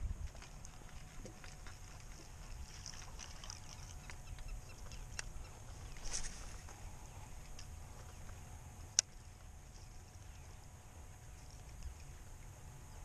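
Quiet handling of fishing gear in a kayak on calm water: a steady low rumble, small scattered clicks and taps, a short hiss about six seconds in and one sharp click about nine seconds in.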